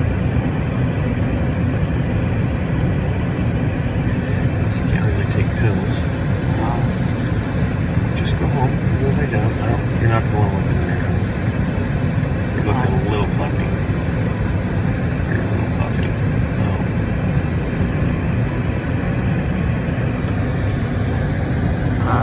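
Steady low rumble of a car idling, heard from inside the cabin, with faint mumbled speech now and then.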